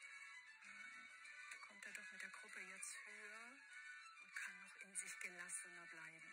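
Faint, indistinct talk, likely a commentator's voice, heard through a television's speaker and picked up off the set, over quiet background music.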